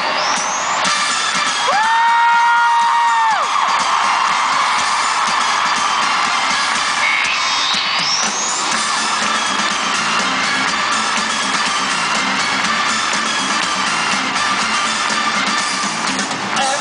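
Concert crowd cheering and screaming over loud live pop music. One long high note, held for about a second and a half, rises out of it about two seconds in.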